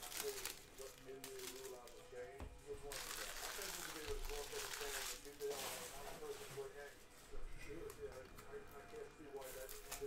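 Foil trading-card pack wrappers crinkling and being torn open, in several bursts of crackling rustle.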